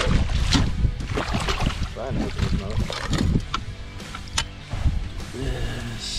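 Background music over water splashing as a hooked lake trout thrashes at the surface beside a boat.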